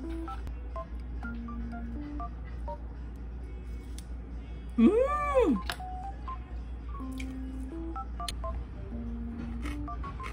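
Light background music: a simple melody of plain electronic tones stepping from note to note, with a woman's short hummed "mm" about five seconds in.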